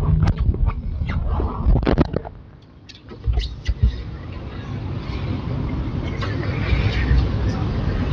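Papers being shuffled and handled at a lectern microphone: a run of short knocks and rustles in the first two seconds, then steady handling noise and muffled murmuring that builds toward the end.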